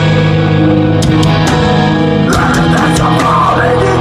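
Live rock band playing loud: electric guitars and bass holding sustained chords over drums with repeated cymbal hits. A higher, wavering line comes in about halfway through.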